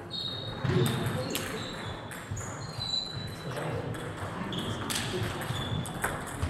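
Table tennis balls knocking off bats and tables, a few sharp clicks spread through, over background voices in a sports hall.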